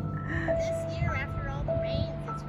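Background music of slow, held notes, a new note starting a little more than once a second.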